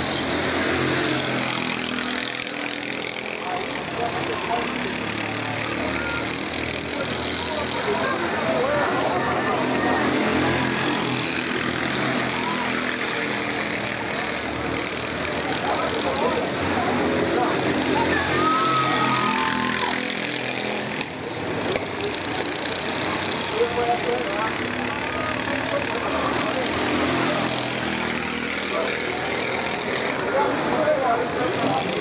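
Racing kart engines running around the track, their pitch rising and falling as the karts brake and accelerate through the corners, with people talking nearby.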